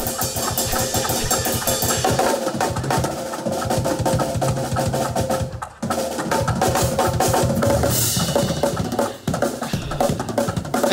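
Several drum kits played together in a gospel chops shed: fast snare and tom fills over bass drum and cymbal crashes. The playing stops dead for a split second a little past halfway, then comes straight back in.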